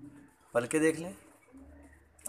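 Caged Teddi pigeons cooing, with a man's short spoken phrase about half a second in.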